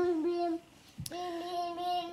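A child's voice singing long, steady held notes, broken by a short gap with a single click about halfway.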